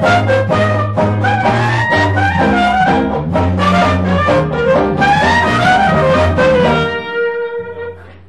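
Traditional New Orleans jazz trio of clarinet, string bass and banjo playing a swinging tune, with the clarinet melody over a walking bass. About seven seconds in, the band stops on one held final note.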